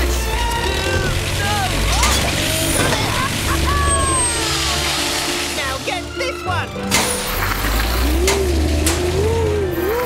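Animated cartoon soundtrack: background music under characters' sliding exclamations and cries, with short sound effects.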